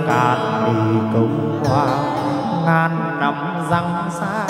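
Chầu văn ritual singing: a man's voice with wide, wavering vibrato, accompanied by a plucked đàn nguyệt (moon lute).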